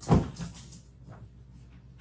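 A single short, dull bump with a brief scrape just after the start, the kind a hand and drawing tool make against paper on a table; then only faint scratching.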